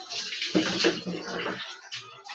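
Water poured from a plastic dipper over a person's head and body during a bucket bath, splashing onto the floor. The splashing is loudest about half a second in and stops sharply about a second and a half in.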